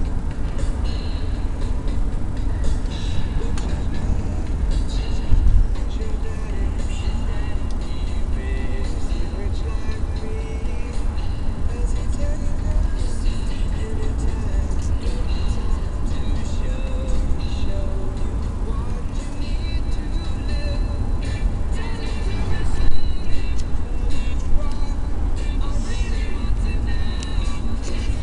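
Steady low rumble of a car driving, heard from inside the cabin, with a car radio playing music and voices underneath.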